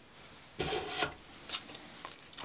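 Tarot cards being handled, with a soft rubbing scrape about half a second in and a shorter one near one and a half seconds.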